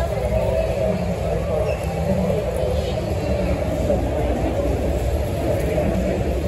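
Indistinct chatter of a crowd over a steady low rumble, with no nearby voice standing out.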